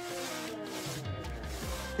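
Background music, with a small brush rubbing liquid decoupage medium onto the bare wooden bottom of a drawer.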